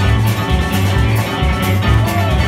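A live blues band playing: electric guitar and keyboard over bass guitar and drum kit, with a steady beat and a walking bass line.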